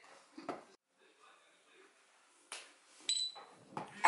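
Plastic handling knocks from a DJI Mavic Pro remote controller and the tablet being clipped into its holder: a thump about half a second in and a sharp click at about two and a half seconds. Just after three seconds comes a short, high electronic beep.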